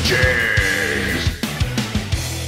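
Logo jingle music with repeated sharp drum hits and a low bass line, and a high held note starting about a quarter second in and lasting most of a second.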